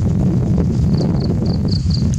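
Wind buffeting the microphone with a steady low rumble, while an insect chirps in short high pulses about four times a second in the second half.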